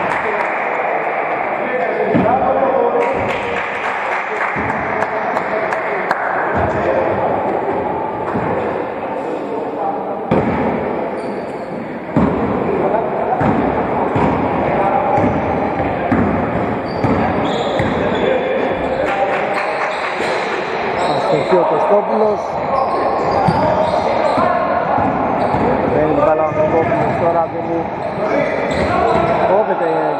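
Basketball bouncing on a hardwood court during play: a string of irregular thuds in a large, echoing sports hall, with players' voices calling out.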